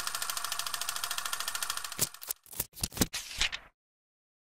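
Outro logo sound effect: a rapid, even clicking rattle for about two seconds, then a few sharp hits, cutting off abruptly before the end.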